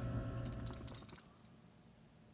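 An outdoor wood boiler's propane side burner running with a steady hum, with a few light metallic clinks about half a second to a second in. The sound cuts off suddenly just over a second in, leaving only faint hiss.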